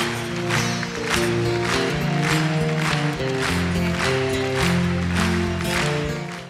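Band music with held chords and a steady beat about twice a second, acoustic guitar among the instruments.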